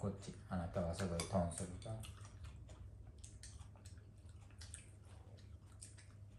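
Brief untranscribed voices in the first two seconds, then faint short clicks and smacks of people eating with forks from plates at a dinner table, over a steady low room hum.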